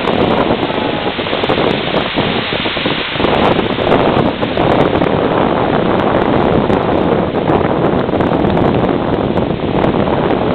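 Ocean surf breaking and washing up the beach, mixed with wind buffeting the microphone: a loud, steady rushing noise.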